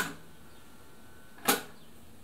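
Two sharp clacks about a second and a half apart from the Siruba DL7200 industrial sewing machine's automatic presser-foot lifter as the treadle is heeled back and released, with a faint thin whine between them while the foot is held up.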